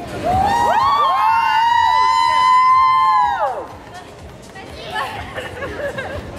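Several women's voices cheering together in one long held 'woo' that rises at the start and drops away after about three and a half seconds, followed by excited chatter and laughter with a few hand claps.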